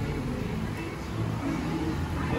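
A car on the road driving by, a steady low engine and tyre noise.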